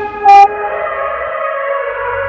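A short, loud, buzzy electronic beep from the workout interval timer marking the end of an exercise, over background music of held synth chords; a bass line comes in near the end.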